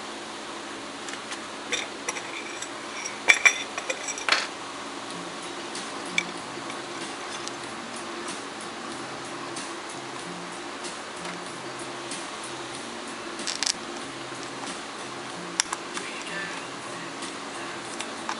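Scattered clicks and knocks as the cover of an electric motor's terminal box is handled and fitted back in place. The loudest cluster comes about three to four seconds in, with a few more later, all over a steady low hum.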